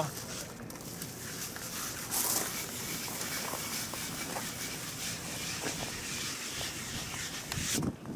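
Steady outdoor background noise with a light wind hiss and a brief louder rush about two seconds in.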